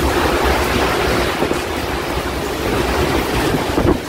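Violent tornado wind buffeting a phone's microphone: a loud, steady rushing roar with no break.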